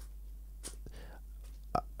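A man's faint mouth noises in a pause between sentences, close to the microphone: two small clicks, about two thirds of a second in and near the end, over a steady low hum.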